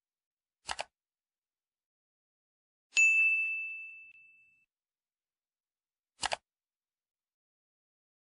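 A bright ding that rings out and fades over about a second and a half, a subscribe-bell style notification sound, with a short double click, like a button being tapped, about a second before it and another near the end.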